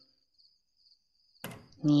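Faint high cricket chirping, then a single sharp click about one and a half seconds in: a door latch clicking open.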